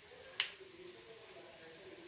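A single sharp tap of a steel spoon against a nonstick frying pan about half a second in, with a brief ring.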